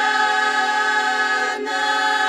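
Bulgarian women's folk choir singing a cappella, holding long notes in close harmony over a steady low voice; the upper notes shift about one and a half seconds in.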